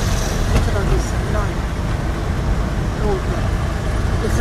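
Steady engine and road rumble heard from inside a moving car's cabin, with quiet voices talking now and then.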